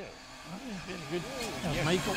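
Mitsubishi Lancer Evolution rally car's engine revving up and down in several quick rises and falls of pitch as the car slows for a junction, with the engine blipping on the downshifts.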